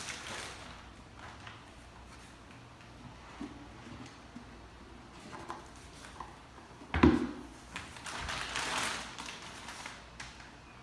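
Plastic wrapping bag rustling and crinkling as a boxed item is handled, with one sharp, heavy thump about seven seconds in, followed by a louder stretch of crinkling.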